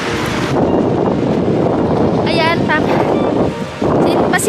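Wind buffeting the camera microphone: a loud, steady rumbling rush, with a brief voice heard over it about halfway through.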